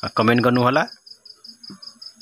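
A steady, high, insect-like chirping, about seven pulses a second, continues throughout. In the first second a man's voice speaks a short phrase over it and is the loudest sound.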